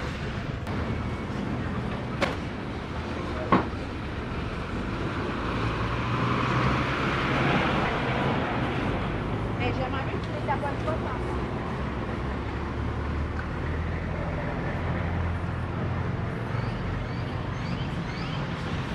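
Busy street ambience: vehicles passing on the road, with engine rumble swelling twice, about six and fourteen seconds in. Two sharp knocks sound about two and three and a half seconds in, and there are voices of people nearby.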